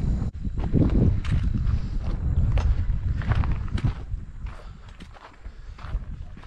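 Footsteps on a rocky dirt trail: irregular crunches and scuffs of boots on stones and grit. A low rumble under them eases after about four seconds.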